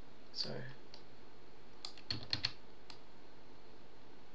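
A few short clicks at a computer as keys and mouse buttons are pressed, spread out with a quick cluster of three or four about two seconds in.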